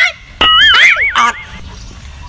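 A loud, high-pitched squeal that starts suddenly about half a second in, holds briefly and then warbles up and down for about a second, honk-like in character.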